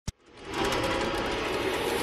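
Logo-intro sound effect: a brief click, then a noisy rumble with a rapid fluttering pulse of about ten beats a second that swells in over the first half-second and then holds steady.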